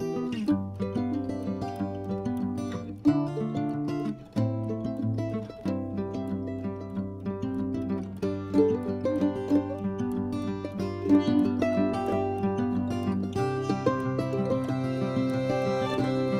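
Background music: a plucked-string instrument playing a melody over a changing bass line.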